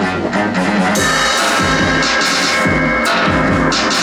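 Live electronic music: a synthesizer holding steady tones, with an acoustic drum kit (kick drum and cymbals) coming in about a second in and playing a driving beat.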